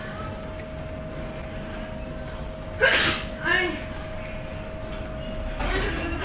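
A single sharp vocal outburst from a person about halfway through, followed by a brief voiced sound, over a steady hum that stops shortly before the end.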